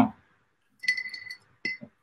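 Two light clinks of a hard object, the first ringing briefly at a high pitch, the second shorter, under a second later.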